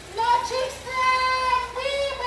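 A woman's high-pitched voice chanting a protest slogan through a megaphone, in long drawn-out held phrases with short breaks.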